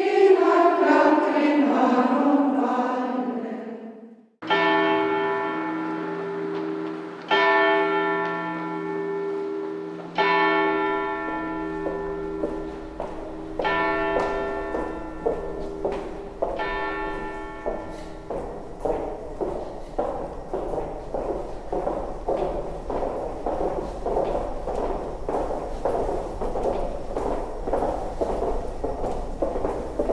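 A choir of women's voices singing, fading out. Then a single bell struck five times, slow and evenly, about three seconds apart, each stroke ringing on. After that come the footsteps of several people walking on a stone floor.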